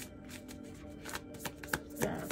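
Tarot deck being shuffled by hand: a run of quick, irregular soft card flicks that come thicker in the second half. Faint background music holds a steady low note underneath.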